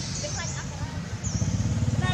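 A motor engine running with a low, even rumble that grows louder a little over a second in, with higher chirping calls over it.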